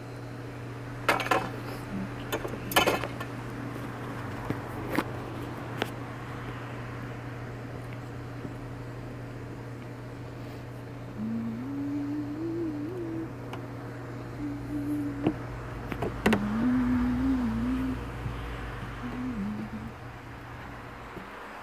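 A steady low hum runs under everything, with a few sharp clicks in the first few seconds. Later a person's voice hums a wavering tune, twice for about two seconds each.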